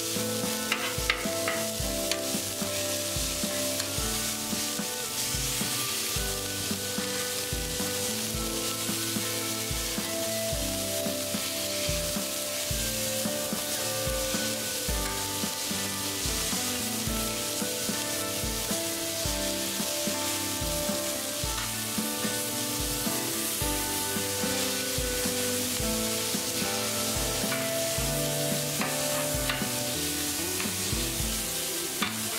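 Ground-beef patties sizzling on a hot cast iron griddle as a metal spatula presses them flat, over background music with a steady beat.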